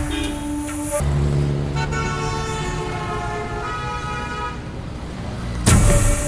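Background score music. For about a second the rhythmic music carries on, then it gives way to held, horn-like notes for several seconds, and a loud hit comes near the end.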